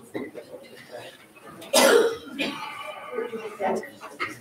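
Low murmured conversation in a room, with one loud, short cough a little under two seconds in.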